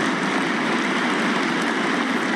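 Audience applauding with steady, dense clapping.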